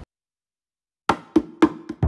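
Dead silence for about a second at an edit, then background music starts with four sharp, pitched percussive notes.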